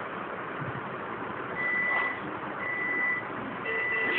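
Three steady, high-pitched electronic beeps, each about half a second long and about a second apart, starting about one and a half seconds in, over a steady background hiss.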